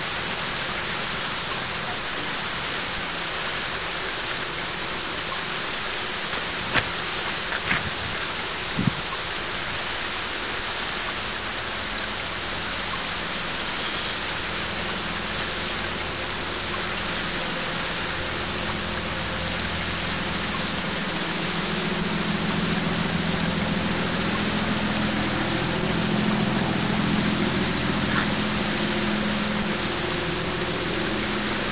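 Heavy rain falling with a steady hiss. A few sharp ticks come about seven to nine seconds in. A low hum joins in past the halfway mark and grows a little louder.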